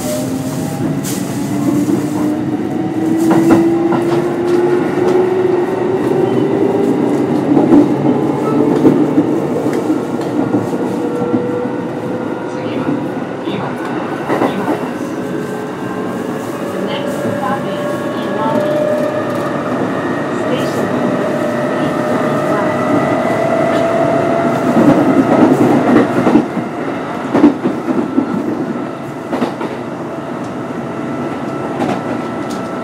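Kintetsu 8800 series electric train with field-phase control running: its traction motors and gears whine, climbing steadily in pitch as the train accelerates. Wheels click over rail joints, and the sound drops a little near the end.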